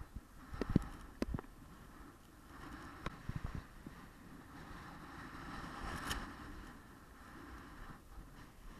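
Skis sliding and scraping over packed snow with a steady rush of air, broken by several sharp knocks and clatters, the loudest a little under a second in.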